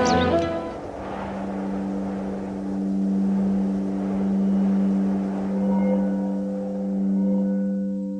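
Ambient music between song vocals. A fuller chord dies away in the first second, leaving a single held low synth tone that swells and fades in slow waves.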